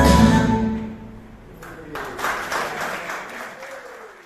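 Recorded dance music cuts off in the first second, then an audience claps, the applause swelling about two seconds in and fading toward the end.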